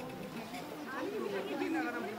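Faint background chatter of people talking. A steady held tone fades out at the very start.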